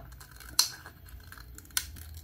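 Metal scissors snipping through a clear plastic soda bottle: two sharp snips about a second apart, the first louder.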